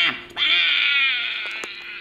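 High-pitched, pitch-shifted cartoon voice of SpongeBob from a video playing on a screen: a short syllable ends at the start, then one long wavering, drawn-out call of his name, fading towards the end. A faint steady hum runs underneath.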